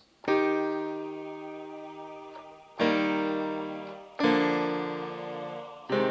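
Roland ZEN-Core 'Piano + Choir 1' preset, a piano layered with choir, in the Zenbeats ZC1 synth: three chords struck a few seconds apart, each held and slowly fading.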